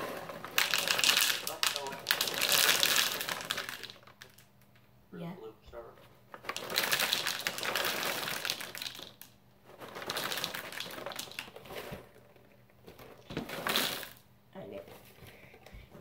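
Froot Loops cereal poured from the box's liner bag into a bowl, with crinkling and rattling. It comes in four bursts of a second or two each, with short pauses between them.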